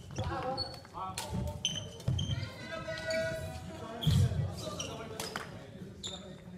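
Badminton doubles play on a wooden gym floor: sneakers squeaking and footfalls thudding as players move, with a few sharp clicks of rackets striking the shuttlecock.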